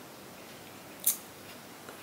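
Quiet room tone broken once, about a second in, by a single very short, sharp, high-pitched tick or hiss.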